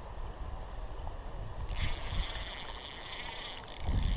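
A spinning reel being cranked to retrieve the line: about two seconds in, a steady high whirring hiss of the turning reel starts, over a low rumble.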